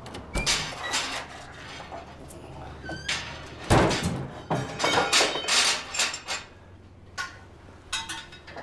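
A string of knocks and clatters with one heavy, deep thump just under four seconds in, like a door being shut, and more clattering a second or two later.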